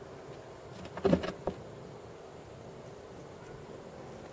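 Beads clattering against the tabletop as they are handled: a short burst of light clicks about a second in, then a single sharp knock, over a steady faint hum.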